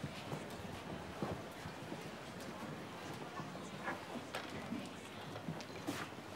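Quiet room ambience of faint background voices, with a few footsteps on a hard floor.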